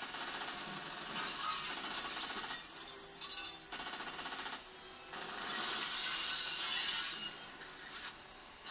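Movie sound effects of glass shattering and crunching, played through a television's speakers, in several stretches with the loudest about five to seven seconds in.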